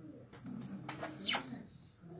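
A few clicks of laptop keys being pressed, with a short, sharply falling squeak a little past a second in, the loudest sound here.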